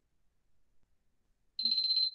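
Near silence, then near the end a short, high-pitched steady electronic tone lasting about half a second.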